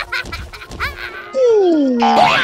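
Cartoon sound effects: short squawky, quack-like cartoon animal vocal sounds, then about halfway through a loud cry that slides steadily down in pitch.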